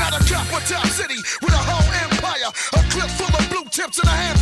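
Hip hop track with rapping over a heavy kick-drum and bass beat; the bass and kick cut out briefly about a second in and twice more near the end.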